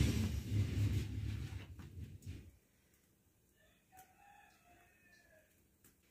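A low rumble that stops suddenly about two and a half seconds in, then a rooster crowing faintly for nearly two seconds.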